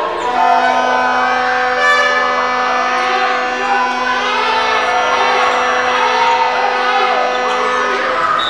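A single horn tone held at one steady pitch for about seven and a half seconds over crowd noise in a sports hall.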